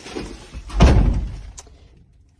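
A van's cab door being pulled shut: rustling movement builds to one dull, heavy thud a little under a second in, which dies away within about half a second.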